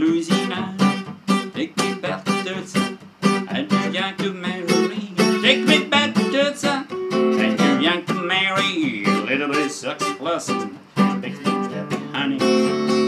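Epiphone jumbo acoustic guitar strummed in a steady rhythm, several strokes a second, accompanying a man singing a song in English.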